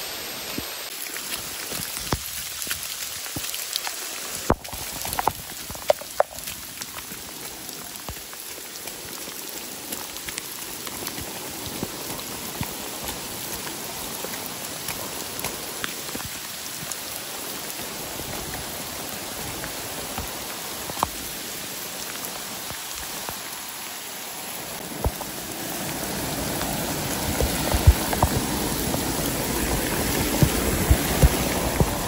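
Steady heavy rain falling on forest foliage, with scattered sharp drop hits. It grows louder in the last few seconds.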